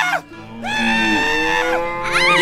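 A cartoon cow character's voice letting out a long, held scream about half a second in, over background music.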